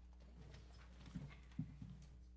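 Near silence over a steady low electrical hum, broken by a few soft, short knocks a little over a second in.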